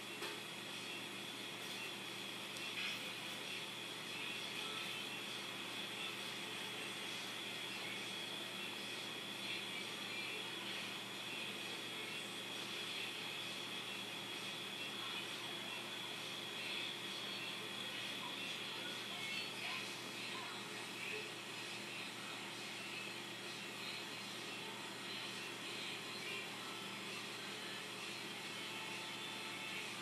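Steady hum and hiss with a faint high-pitched whine.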